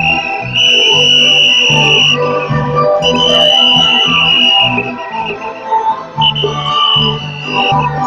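Loud traditional temple-procession music: a shrill high wind instrument plays three long held notes, each about a second and a half, over irregular drumming.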